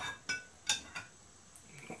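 A metal spoon clinking against a glass jar as yogurt is scooped out, about four light clinks in the first second.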